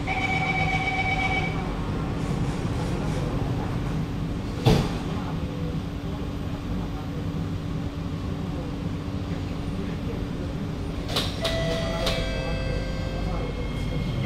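Inside a Kawasaki–CRRC Sifang C151B metro train: the door-closing warning tone sounds in the first second or so, a single loud thud comes about five seconds in as the doors shut, and the carriage rumbles on as the train moves off. A chime sounds near the end, just before the next-station announcement.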